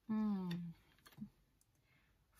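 A woman's voice making a short, held wordless sound that falls slightly in pitch, with a sharp click about half a second in and a few faint clicks around a second in as tarot cards are handled.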